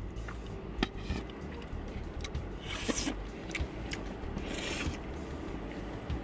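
Small eating noises: a plastic straw scraping through thick milkshake in a foam cup, with short clicks and a couple of brief raspy scrapes, over a low steady hum.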